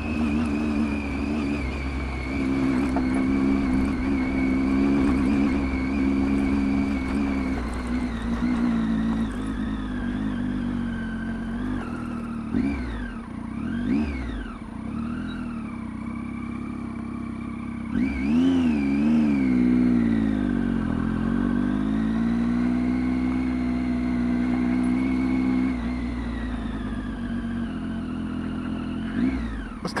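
Triumph Tiger 800 XCx's three-cylinder engine running as the motorcycle rides a dirt road. The note holds steady, then dips and rises in pitch several times around the middle as the throttle comes off and back on, before settling steady again.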